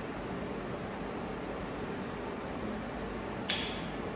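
Steady fan-like background hiss, with one sharp click about three and a half seconds in as a clamp fixture insert is handled and fitted into an orbital pipe-welding head.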